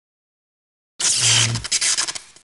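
Silence, then about a second in a sudden loud rushing, hissing sound effect with a brief low hum beneath it, breaking into rapid flickers as it fades: an outro logo sting matching an animated lens-flare graphic.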